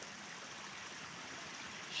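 Faint, steady rushing of running water, with no distinct events.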